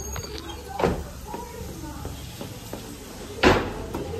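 Two sharp thumps, one about a second in and a louder one near the end.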